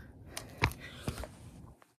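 A few scuffing footsteps on gritty dirt and rock, followed by knocks and rubbing as the camera is picked up and handled; the sound cuts off abruptly near the end.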